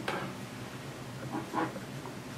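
Soft rustling of a terry-cloth towel being rubbed over a Montblanc Meisterstück 149 fountain pen to wipe off ink, with a brief slightly louder rub about one and a half seconds in.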